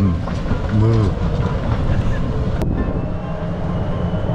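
Small open cart rolling along a paved path: a steady low rumble with wind on the microphone, a voice briefly in the first second, and a single sharp click about two and a half seconds in.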